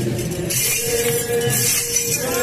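Enburi festival music: held, steady flute-like tones with a bright metallic jingling that swells about half a second in, typical of the dancers' jangi rattles.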